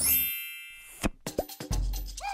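A bright chime sound effect that rings and fades over about a second, followed by two quick cartoon plop sounds. Music with a bass beat starts near the end.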